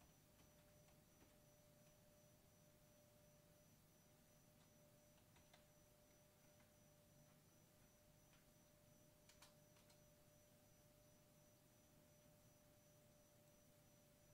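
Near silence: a faint, steady pure tone over low hiss, with a few tiny clicks, one about nine seconds in.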